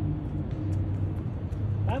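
Steady low drone of urban street traffic, an even engine-like hum with no rise or fall.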